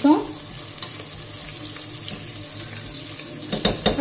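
Sliced onions frying in oil in an aluminium pressure cooker, a steady sizzle as a spatula stirs them. A few sharp knocks and scrapes of the spatula against the pot near the end.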